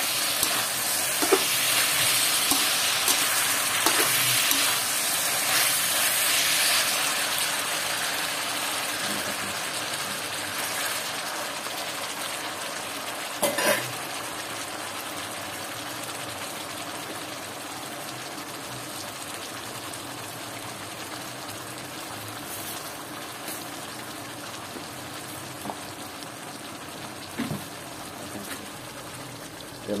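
Pork belly pieces frying and sizzling in a wok, the sizzle slowly fading. A few short knocks of the metal spatula against the pan, the loudest about halfway through.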